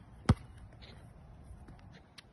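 A basketball bouncing once on an outdoor hard court: a single sharp bounce about a third of a second in, followed by a few faint light taps.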